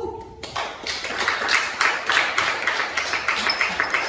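A round of applause from the audience and panel: many hands clapping, starting about half a second in and going on steadily.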